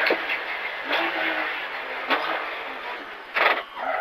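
Porsche 911 (997) GT3 rally car's flat-six engine running at speed, heard from inside the stripped cabin under a steady wash of road and wind noise, with a few brief knocks.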